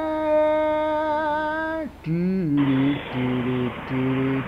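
A voice singing a tune without words: one long held note that wavers slightly near its end, then a sliding note and a string of short hummed notes. A steady hiss comes in a little past halfway.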